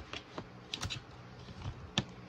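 A few light, irregular clicks and taps: handling noise.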